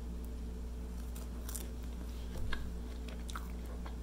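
A person chewing a bite of egg-white baguette dipped in olive oil and feta bread dip, faint, with a few scattered soft clicks.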